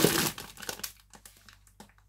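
Plastic shrink-wrap around a four-pack of drink cans crinkling as it is handled, loudest in the first half second, then a few fainter rustles.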